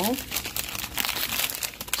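Plastic food packets crinkling as a hand rummages through them, a dense run of small crackles.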